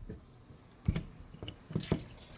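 Aluminium jig mold halves being folded shut by their handles: a few light metallic clicks and knocks, the sharpest about a second in and another near the end.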